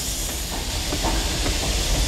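Moving train: a steady low rumble and hiss, with a few faint clicks.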